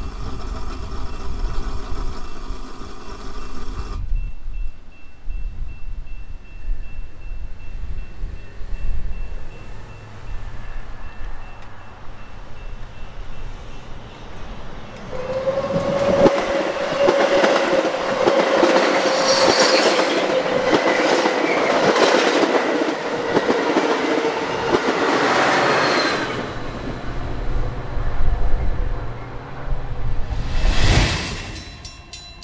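Metra bilevel commuter train approaching and passing close by, its wheels on the rails loudest from about sixteen seconds in and fading near the end. A steady mid-pitched tone rides over the passing noise from about fifteen seconds in.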